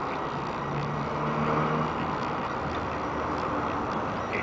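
Street traffic noise, with a vehicle engine hum that swells and fades over the first two seconds.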